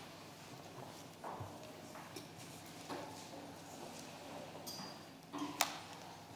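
Quiet meeting-room noise: scattered light knocks and clicks from people settling around the table, the loudest about five and a half seconds in.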